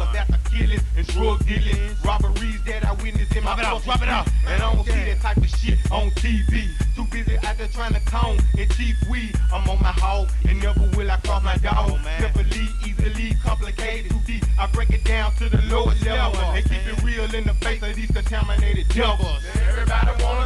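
Memphis rap track played back from a cassette tape: a beat with a heavy, steady bass and rapped vocals.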